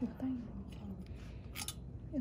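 A single short, sharp click about one and a half seconds in, after a moment of low talking.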